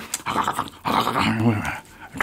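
A man's voice making wordless vocal sounds in two bursts, the second low and pitched.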